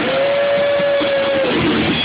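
Live rock band playing, with one clear note held steady for about a second and a half over the band before it drops away.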